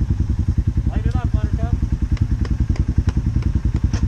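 ATV engine idling steadily, an even low throb of about a dozen beats a second.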